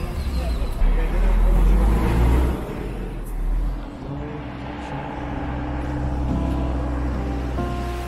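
Road traffic: car and bus engines running with a low rumble, loudest in the first two and a half seconds, then a steadier engine hum.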